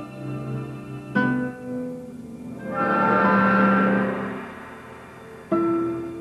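Classical guitar and orchestra playing. A sharp plucked chord about a second in rings and fades, an orchestral swell with sustained tones rises and dies away in the middle, and another plucked chord sounds near the end.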